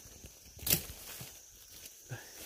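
A single brief rustle of leaves and twigs in forest undergrowth about three-quarters of a second in, over a faint, steady, high-pitched insect drone.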